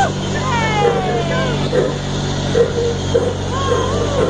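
Pickie Puffer miniature ride-on train's engine running steadily as the train moves along, with voices over it.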